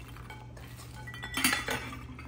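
Walnut pieces poured from a glass jar into a metal measuring cup and spilling into a ceramic bowl of nuts and seeds: a soft patter of falling pieces, then a short burst of clattering clicks about a second and a half in.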